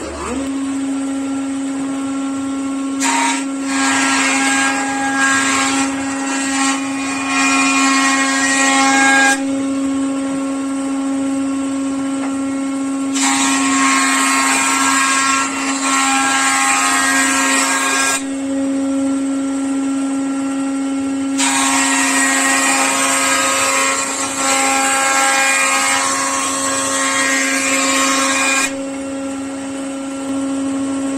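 Jointer (surface planer) switched on, its motor and cutterhead running with a steady hum. A hardwood plank is fed over the cutterhead three times, each pass a loud cutting whine lasting five to seven seconds, as the face is planed flat and square for ripping into boards.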